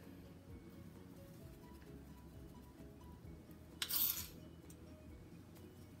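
A metal spoon briefly clinks and scrapes against a dish about four seconds in, while cinnamon sugar is spooned over a cobbler. Quiet background music plays throughout.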